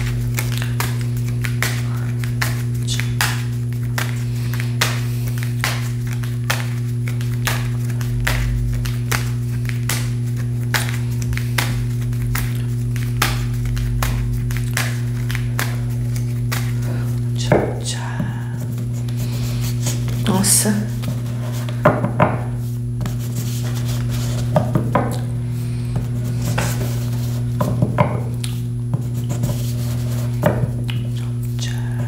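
A deck of tarot cards being shuffled by hand, with soft regular ticks about two or three a second, then louder irregular clicks and taps in the second half, over a steady low hum.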